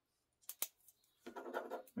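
Two quick, sharp clicks close together as a ballpoint pen is picked up and readied to write, followed near the end by the start of speech.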